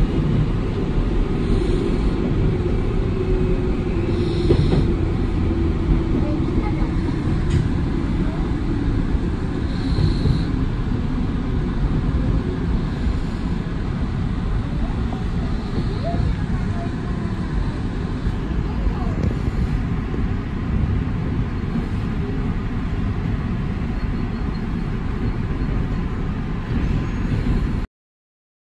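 Tobu commuter electric train running out of a station, heard from behind the driver's cab: a steady, loud low rumble of wheels on rail and running gear, with faint clicks now and then. The sound cuts off suddenly at the end.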